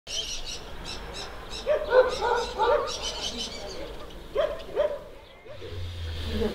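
Small birds chirping in quick series, with short, lower animal calls in two groups: four near the start and two more a little later.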